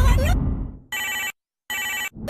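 A deep boom dies away over the first second, then a telephone ring sounds in two short bursts.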